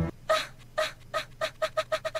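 A short clucking sound chopped and repeated about ten times, the repeats coming faster and faster.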